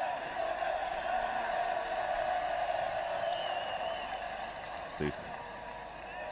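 Stadium crowd chanting, a steady massed sound from the stands, with a brief high wavering whistle a little after three seconds in and a short thump about five seconds in.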